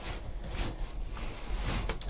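Faint handling sounds of a sealed cardboard case being turned over in the hands, over a steady low hum.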